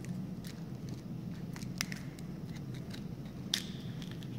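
A few sharp small clicks of a metal bead chain and the white plastic clutch mechanism of a roller blind as the chain is handled and fitted into it, the loudest near the end, over a steady low hum.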